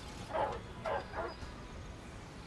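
A dog barking three times in quick succession, over a steady low street background.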